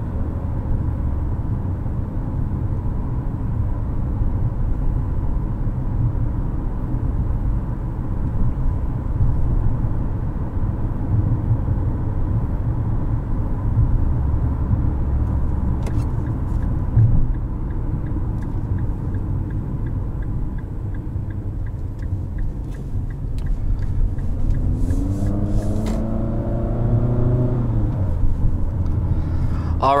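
Cabin rumble of a 2022 Infiniti QX55 cruising at about 40 mph: steady road and tyre noise with its 2.0-litre variable-compression turbo engine underneath. A rising engine note comes near the end.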